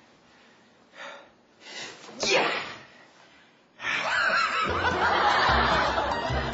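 A man laughing in short bursts. About four seconds in the sound turns suddenly louder, and music with a steady low beat comes in under the laughter near the end.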